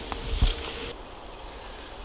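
A short dull thump about half a second in, then faint woodland background.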